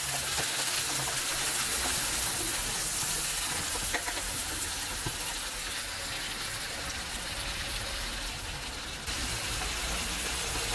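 Stuffed squid frying in a pan, a steady sizzle of the bubbling oil and juices around it, with a couple of small pops.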